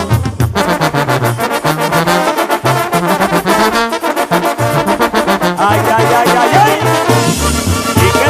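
Instrumental break in Mexican regional band music: a brass section of trumpets and trombones plays fast repeated notes over a stepping bass line, with no singing.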